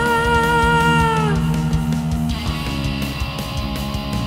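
Heavy metal instrumental passage with guitars and drums. A long held lead note with vibrato dies away about a second in, and the band moves into a heavier section about two and a half seconds in.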